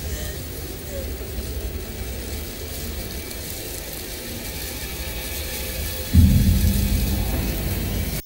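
Low, steady rumbling drone from a horror film's soundtrack. About six seconds in it suddenly swells louder and deeper, with a held low tone.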